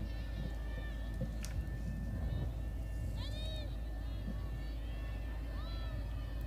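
Field ambience at a lacrosse game: a steady low hum with players' distant shouted calls on the field, a couple of high calls about halfway through and again near the end.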